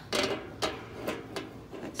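Several light metallic clinks and rattles, the first and loudest right at the start, as a round wire cooking rack is handled and lifted off the grill plate of a Cobb portable charcoal grill.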